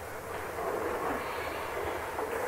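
Steady background hiss with a faint low hum from the recording itself, in a brief gap between spoken words.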